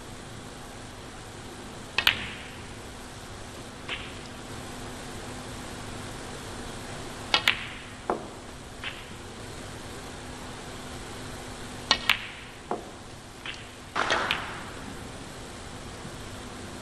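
Snooker balls clicking during play: three sharp double clicks, about 2, 7.5 and 12 seconds in, with lighter knocks of the balls between them and a quick cluster of clicks near the end, over a quiet arena with a faint steady hum.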